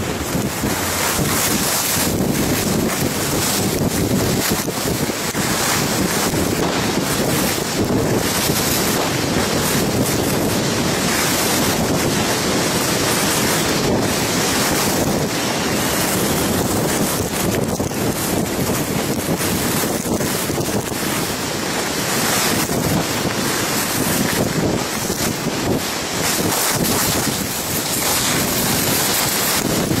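Steady rush of wind on the microphone of a camera carried by a skier running down a groomed piste, mixed with the hiss and scrape of skis on packed snow, swelling and easing through the turns.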